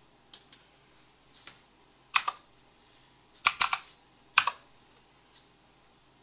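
Computer keyboard keystrokes in a few short clusters of sharp clicks, the loudest run of several keys about three and a half seconds in.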